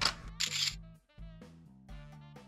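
Camera shutter firing: a sharp click right at the start and a longer shutter burst about half a second in. About a second in, background music with steady low notes begins.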